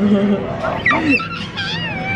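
A young child's high-pitched, wavering vocal squeals, which rise and fall in pitch in the second half.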